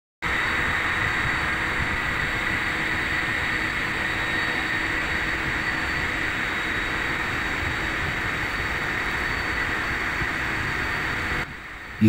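Steady machinery noise at an industrial plant: an even, loud rushing with a few faint steady hums and whines. It starts abruptly and cuts off shortly before the end.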